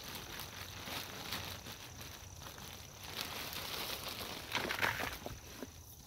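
Light rustling and scratching of hands handling a plastic plant pot and potting soil, with a louder cluster of scrapes about five seconds in.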